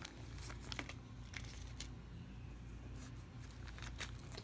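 Small plastic zip-top bags handled by hand, giving a few faint, scattered crinkles and light clicks.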